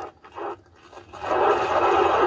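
Starship launch broadcast audio: a steady rushing noise, without a clear pitch, that swells in about a second in after a brief lull.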